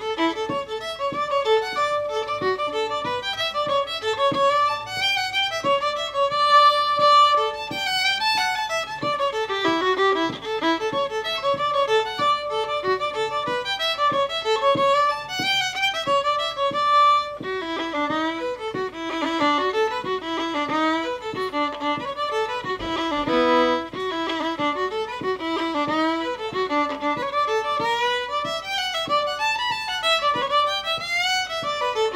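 Solo fiddle playing a traditional Irish reel: a fast, continuous run of short bowed notes.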